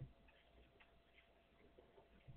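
Near silence: faint room tone with a low hum and a small click at the start, then a few very faint ticks.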